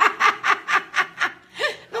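A woman laughing in a quick run of about six short bursts, about four a second, then one more brief laugh.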